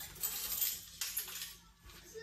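Small objects handled on a kitchen countertop: a clinking, rattling clatter in two spells of about a second each.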